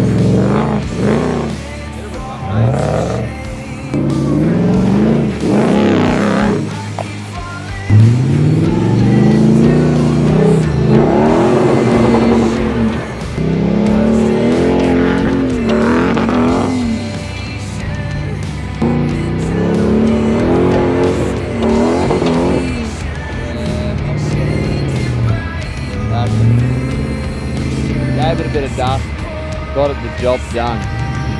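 Toyota Land Cruiser 100-series V8 engine revving hard in repeated surges, its pitch rising and falling several times, as it powers up a steep loose-dirt hill with the tyres spinning and throwing up dirt.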